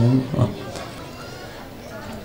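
A man's amplified chanting voice holds a long note that breaks off just after the start, followed by a brief vocal sound and then a pause filled only with a low murmur of background noise.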